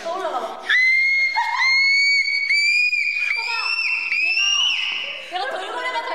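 A young woman's voice singing a run of very high held "ah" notes in whistle register, about six short notes one after another, each stepping a little higher, pushed up by a call to "go higher" in a pitch-matching game. Chatter comes before the notes and again near the end.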